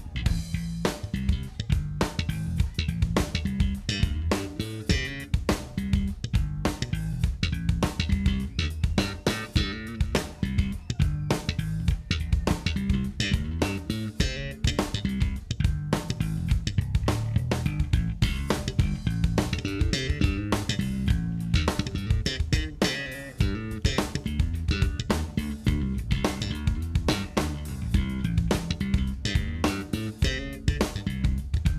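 Five-string electric bass guitar played solo with the fingers: a dense, unbroken run of quick plucked notes with a strong low end.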